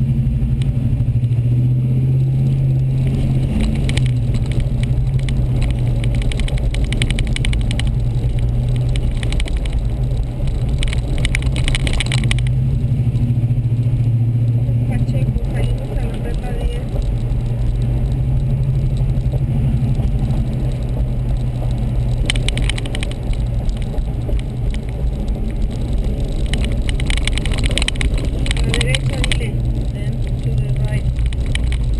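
Car driving on town streets, heard from inside the cabin: a steady low engine and road hum, with a few short spells of higher-pitched hiss or rattle.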